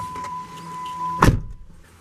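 A steady high warning tone from the Jeep Wrangler's dashboard sounds while the driver's door stands open, then the door is pulled shut with a single solid thud about a second and a quarter in, and the tone stops with it.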